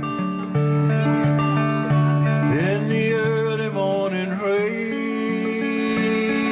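Acoustic guitar playing a slow country-folk accompaniment, with held melody notes that glide in pitch over it around the middle.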